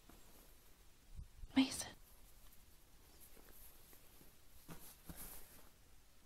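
A faint whisper about one and a half seconds in, followed by a few quieter, shorter whispery sounds.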